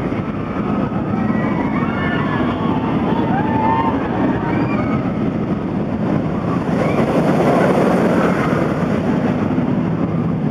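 Wicked Twister impulse roller coaster train running on its track: a steady loud rushing roar that swells about seven to eight seconds in, with high voices crying out over it in the first half.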